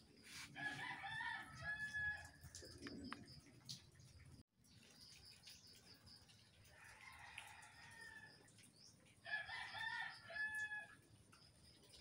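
A rooster crowing faintly, twice: once about half a second in and again after about nine seconds. Each crow lasts about a second and a half and ends on a held high note.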